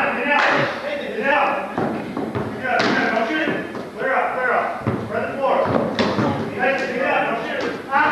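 Indistinct voices of players and onlookers echoing in a gymnasium, with a basketball thudding on the court floor several times at irregular intervals.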